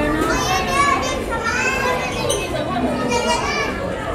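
Children's high-pitched voices calling out and chattering, with other people talking beneath them.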